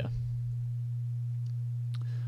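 A steady low-pitched hum, one unchanging tone running under the recording.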